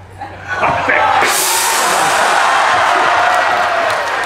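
A large gong struck once about a second in, its crash ringing on under the audience cheering: the act is being gonged off.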